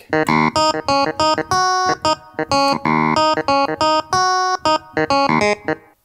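Clavinet voice of a Roland LX706 digital piano being played: a run of short, clipped notes and chords, with a few chords held a little longer.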